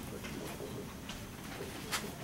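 Dry-erase marker writing on a whiteboard: short scratchy strokes, with a sharper tap near the end.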